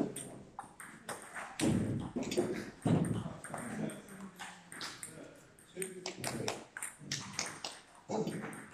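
People talking, with many short sharp clicks of table tennis balls striking bats and tables.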